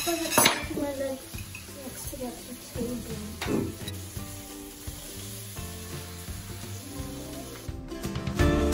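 Hot frying pan of green vegetables sizzling while food is served from it with a spatula, with a few sharp clinks of metal serving utensils against the pan and tray.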